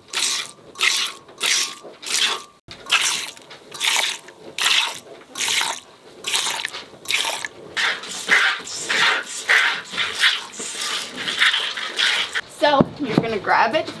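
Milk squirting from a cow's teat during hand milking, a short hiss with each squeeze, at first about one squirt every 0.7 seconds, then quicker and less even in the second half.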